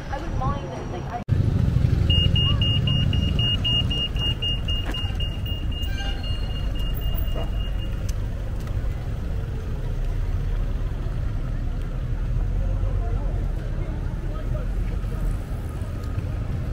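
Pedestrian crossing signal beeping, a steady high tone pulsing about four times a second for some six seconds starting about two seconds in, over the rumble of street traffic.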